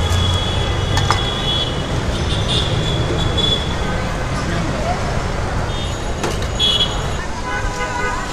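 Busy city street ambience: a steady traffic rumble with voices of people nearby, and short high-pitched tones sounding a few times over it.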